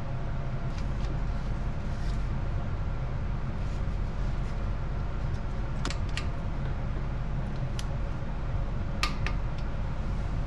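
A steady machine hum, with a few light metallic clicks of hand tools on the engine about six seconds in and twice more near the end.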